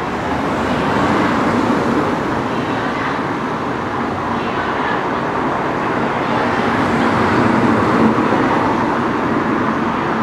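Street traffic: a van's engine running close by as it creeps forward, with cars passing behind it, over a steady murmur of crowd voices.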